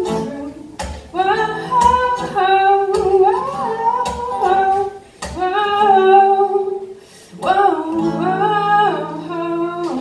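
Acoustic guitar playing under a singer's voice, with long held and sliding sung notes in several phrases, each broken by a short breath.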